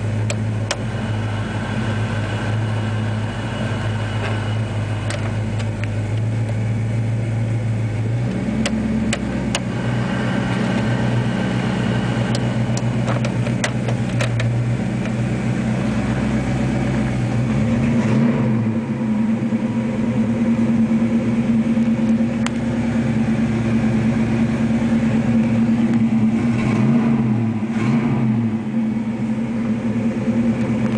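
Cabin sound of a 1970 Chevelle SS's 454 LS5 V8 idling while the heater and air-conditioning blower fan runs. The fan's hum steps up in pitch about eight seconds in as the fan lever is moved, and light clicks come from the dash controls.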